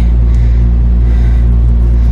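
A loud, steady low hum with evenly spaced overtones, unchanging in pitch and level.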